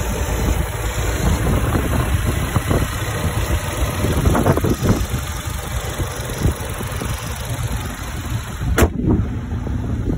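Ford Focus ST's 2.0-litre turbocharged four-cylinder engine idling steadily, heard close over the open engine bay. A single sharp knock comes near the end.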